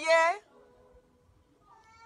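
A woman's voice wailing in a high pitch that glides up and down, breaking off about half a second in; after a quiet pause, a faint rising note near the end leads into more wailing.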